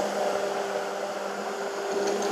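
Robot Coupe Micro Mix immersion blender running in heavy cream as it whips it: a steady, even motor hum.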